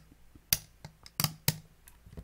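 Fingernails clicking and tapping against a vape box mod's battery door as it is pushed at, about six sharp, irregular clicks.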